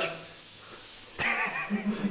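Quiet room tone for about a second, then a sharp click and a person's voice.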